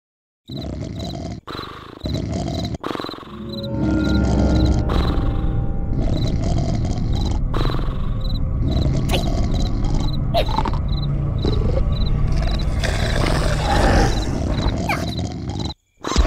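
Loud, low, growl-like rumble of a cartoon sound effect over background music. It starts about four seconds in and cuts off just before the end.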